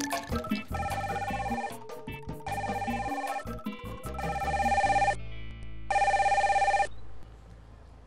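Mobile phone ringing with a trilling ring tone: four rings of about a second each, with short gaps between them, the last ending about a second before the end. Background music plays at the start.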